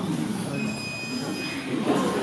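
A single high-pitched, steady squeal about a second long.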